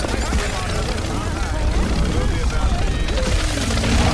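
Many copies of an animated film trailer's soundtrack playing on top of each other at once: a jumble of overlapping voices and music over a steady low rumble.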